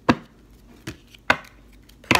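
Three sharp taps on a tabletop as oracle cards and objects are handled, the first and last loudest.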